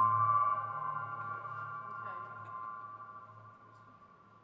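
Electronic synthesizer drone: a sustained chord of steady tones over a low hum, dying away as the piece ends, with a faint brief pitch glide about halfway through.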